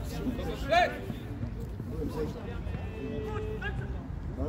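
Scattered shouts and calls of football players and touchline voices across the pitch, with one loud shout about a second in, over a steady low rumble of background noise. A held steady tone sounds for about a second near the end.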